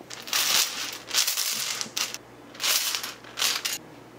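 Small balls rattling and clattering in a container as one is drawn out by hand, in four short bouts of rummaging.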